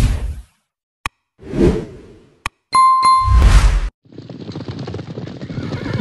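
Subscribe-button animation sound effects: whooshes, two sharp mouse clicks and a bright bell-like ding about three seconds in, then a last whoosh. From about four seconds a steady, noisy clatter of a running herd's hooves begins.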